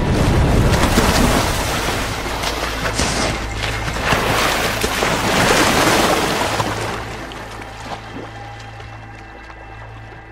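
Heavy water splashing as a polar bear lunges out of the sea at a seal on the ice edge, loud for several seconds and dying away near the end. Background music with a low sustained drone plays underneath.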